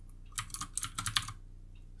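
A quick run of about ten sharp clicks on a computer keyboard and mouse, starting about half a second in and lasting about a second, as a font size is typed or picked from a dropdown.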